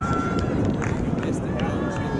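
Rumbling wind noise on the microphone, with faint, distant voices of players calling across an open field.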